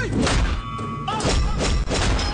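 Film fight sound effects: a series of heavy punch and body-hit thuds, several within the two seconds, laid over a loud background score.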